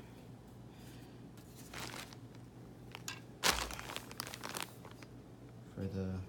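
Crinkling and rustling of a plastic sheet as a removed turbocharger is shifted about on it, with a few irregular handling knocks, the loudest about three and a half seconds in.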